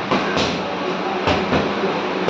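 Boxing gloves striking focus mitts in quick pairs: two one-two punches, about a second apart, over a steady background rumble.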